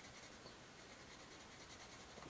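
Faint scratching of a Paper Mate Candy Pop colored pencil being scribbled back and forth on sketchbook paper, laying down a colour swatch.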